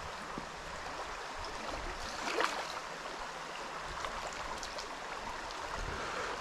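Steady rush of a shallow, rocky river's current running over stones, with one faint brief splash or knock about two and a half seconds in.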